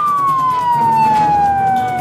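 Emergency-vehicle siren in a wail: one loud, long tone falling slowly and steadily in pitch.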